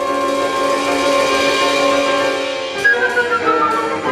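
Instrumental ensemble playing contemporary classical music: a sustained chord, then a sharp attack about three seconds in, followed by a falling run of notes.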